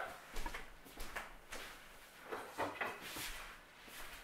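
Faint, scattered knocks and rustling from someone moving about out of sight while fetching a wooden stick to use as a ruler.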